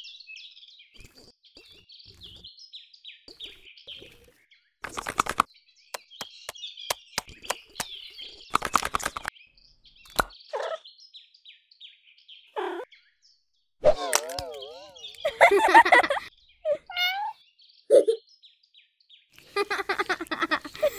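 Birds chirping softly throughout, overlaid with a string of short cartoon sound effects: bursts of rapid clicks, brief squeaks, a wobbling warble about two-thirds of the way in, and a few louder bursts.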